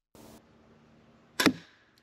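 Crossbow shot: a short, faint rush of noise, then a single sharp, loud crack about one and a half seconds in.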